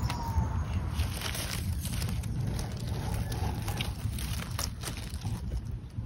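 Dry fallen leaves rustling and crackling as hands push through them, with a steady low rumble of wind on the microphone.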